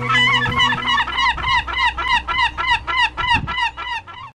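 A gull calling in a rapid series, about four yelping notes a second, each rising then falling in pitch, just after the song's closing chord stops; the calls fade near the end.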